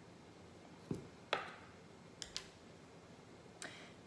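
About five light taps and clicks, scattered and irregular, as a wax figure candle is handled and set down on a table.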